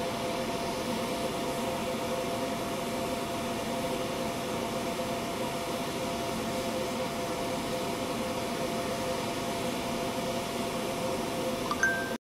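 Air blower running steadily, forcing air through a pipe into a homemade brick charcoal furnace: a constant motor whine over the rush of air and flames, with a brief higher tone just before the end.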